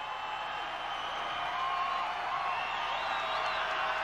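Large concert crowd cheering and screaming, a dense steady roar with single voices calling out high above it, swelling slightly.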